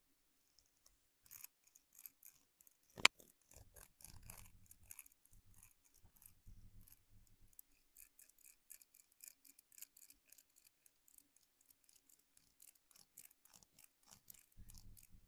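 A comb scraping through hair close to the scalp in many short, quick strokes. There is a sharp click about three seconds in and a few low bumps.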